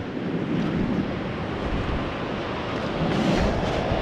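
Steady wind buffeting the microphone with ocean surf behind it, a continuous low rumble and hiss.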